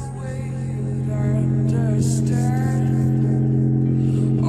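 Music with a singing voice and a heavy, held bass note played through a JBL Flip 4 portable Bluetooth speaker; the bass note steps up to a higher pitch right at the start and is held steadily.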